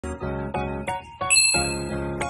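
Short intro music jingle of quick pitched notes, with a bright chime-like ding coming in a little over a second in.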